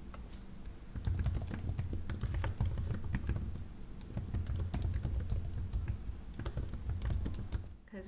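Fingers typing on a low-profile computer keyboard: a rapid, irregular run of soft key clicks that gets louder about a second in and trails off near the end.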